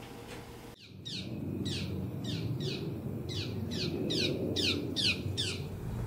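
A bird calling outdoors: a rapid series of high chirps, each sliding downward in pitch, about three a second, starting about a second in.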